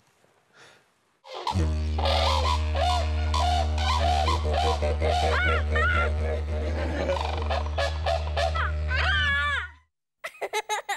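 A steady low music drone with held chord tones starts about a second and a half in, and over it come high, wavering squeals that bend up and down, like excited young children shrieking. It all cuts off suddenly just before the end.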